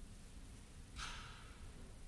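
A person's breath heard once, about a second in, over a low steady room hum.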